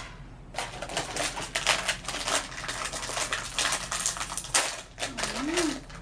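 Foil blind bag being handled and torn open by hand: a dense run of crisp crinkling and crackling lasting about four seconds.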